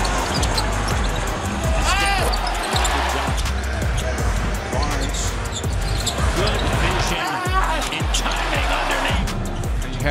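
Basketball game broadcast audio: a ball dribbling on a hardwood court amid the arena's background noise, with background music and some commentary voice underneath.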